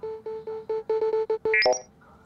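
A run of about ten short electronic beeps on one pitch, coming faster and faster as a ticket-queue counter on a laptop screen ticks down. It ends in a quick rising electronic flourish as the page turns to sold out.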